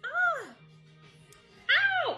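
Tuxedo cat meowing twice, a short rising-and-falling meow at the start and another beginning near the end, over faint background music.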